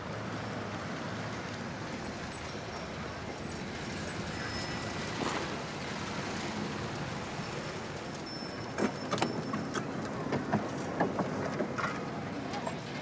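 A car driving slowly along a street and pulling up, its engine running steadily over street noise. A few short clicks and knocks come near the end.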